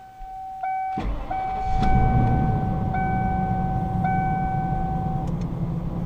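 Ford-chassis Class C motorhome engine restarted warm after about a minute off: it starts about a second in and settles into a steady idle. A dash warning chime sounds over it and stops a little after 5 s.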